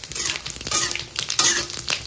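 Whole spices and dried red chillies sizzling in hot oil in an aluminium kadai, with a metal spatula scraping and stirring against the pan in a few strokes, the loudest about a second and a half in.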